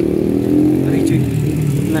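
A motor vehicle's engine running close by with a steady low hum whose pitch wavers slightly.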